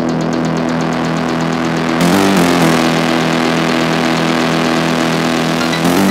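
Techno in a breakdown with the kick drum dropped out: a sustained, buzzing synth chord drones steadily over rapid hi-hat ticks. About two seconds in the chord shifts and a hiss sweep takes the place of the ticks.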